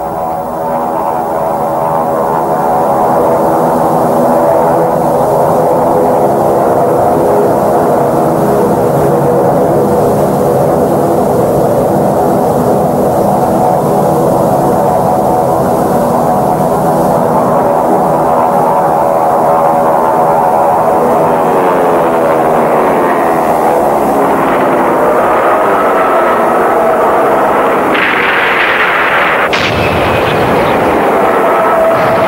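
Propeller aircraft engines droning steadily. From about twenty seconds in, the engine pitch slides up and down as the planes pass.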